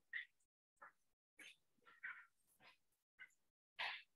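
Faint, short calls from an animal, several in a row at uneven spacing.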